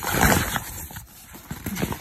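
Nylon tote bag fabric rustling as a hand moves around inside it: a loud rustle in the first half second, then softer crinkling handling noises.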